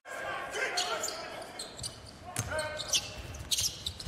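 Live court sound from a basketball game in a large hall: a ball bouncing, faint voices of players and coaches, and a few sharp knocks near the end.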